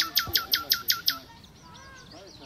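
A songbird singing a fast run of sharp, down-slurred notes, about seven a second, that stops a little over a second in; softer chirps follow.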